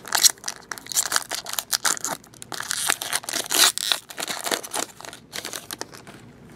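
Foil wrapper of a 2015 Upper Deck Football card pack being torn open and crinkled by hand. It makes a dense run of crackling and crinkling, loudest just after the start and again about three and a half seconds in.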